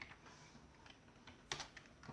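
Near silence, broken by a faint click at the start and one sharper computer keyboard keystroke about one and a half seconds in.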